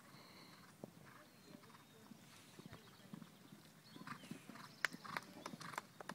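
Hoofbeats of a horse cantering over a sand arena, faint at first and louder over the last two seconds as it comes closer.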